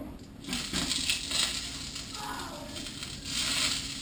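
Eggplant slices frying in oil in a metal frying pan: a steady sizzle, a little stronger near the end.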